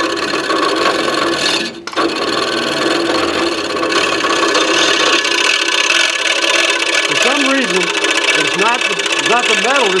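Scroll saw running and cutting through a piece of wood, with a brief drop about two seconds in. Its speed is not consistent: in the last few seconds the pitch swoops up and down again and again, the saw fluctuating instead of sawing steadily.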